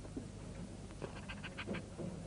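A young woman crying quietly, with a few faint sobbing breaths in the second half, over the low steady hum of an old tape recording.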